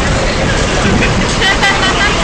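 Loud, steady rumbling noise with indistinct voices coming through near the end.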